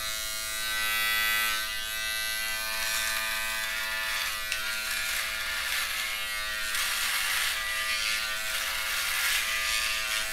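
Kemei rechargeable foil shaver running with a steady buzz as it is moved over the neck, its foil head cutting stubble. It is on a partly run-down battery, not charged that day.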